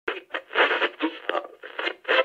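Tinny, narrow-band sound like an old radio: choppy, voice-like bursts with no low or high end.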